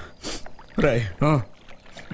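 A man's wordless vocal sounds: a breathy exhale or sniff, then two short voiced moans or sobs.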